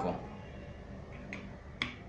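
A few faint, short metal clicks, the last and loudest near the end, as steel open-end wrenches are handled and fitted onto the collet nut of a palm router.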